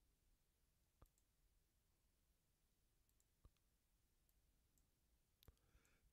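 Near silence broken by three faint single clicks about two seconds apart, typical of a computer mouse being clicked.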